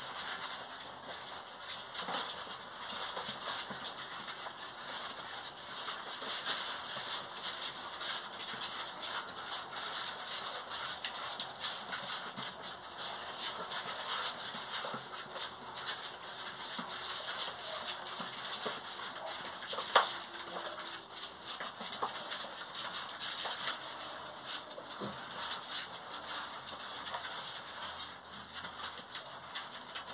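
Twenty-day-old puppies' paws and claws scrabbling and pattering on cardboard sheets and concrete, a steady scatter of small ticks and rustles, with one sharp click about two-thirds of the way through.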